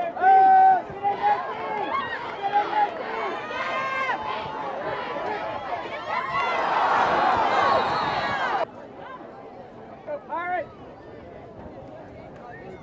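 Spectators at a football game shouting and cheering during a play: a loud, held yell right at the start, then many overlapping voices that swell to a peak around seven seconds in and cut off suddenly a little later, leaving quieter scattered voices.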